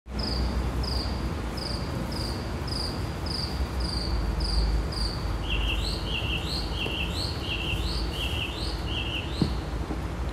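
A songbird singing outdoors: a run of repeated down-slurred whistles, about two a second, then, about halfway through, a switch to a run of a different repeated note, over a low steady background rumble.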